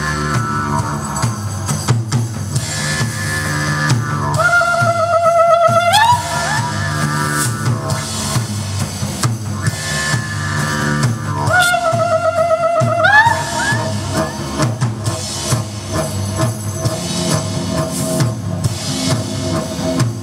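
Live band playing with a drum kit beat, keyboard and a droning didgeridoo. Twice, a long wavering high note is held for about two seconds and ends in an upward slide.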